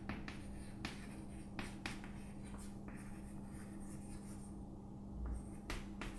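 Chalk writing on a chalkboard: a scattering of sharp taps and scrapes as the chalk strokes letters, over a steady low hum.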